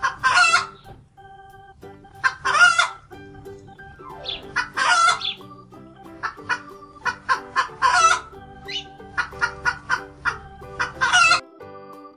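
Hen sound effect: a hen clucking and cackling, with about five loud calls and quick short clucks between them, played over soft background music.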